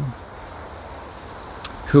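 Steady low outdoor background rumble in a pause between a man's spoken phrases, with one short faint click shortly before the voice resumes.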